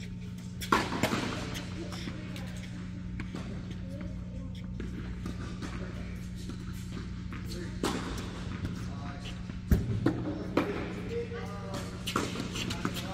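Tennis ball struck by rackets in a rally inside a reverberant indoor tennis hall: a sharp hit about a second in, another near two-thirds through, and the loudest hit close by shortly after, followed by a few smaller hits and bounces. A steady low hum from the building runs underneath.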